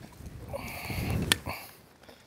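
Soft rustling handling noise from hands working the controls on the handlebars of a BCS two-wheel tractor, with a sharp click a little over a second in.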